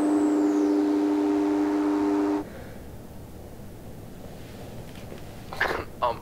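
A loud, steady electronic tone of two or more pitches begins at the cut and cuts off suddenly about two and a half seconds in. A faint high whine falls in pitch during the first second. A brief voice-like sound comes near the end.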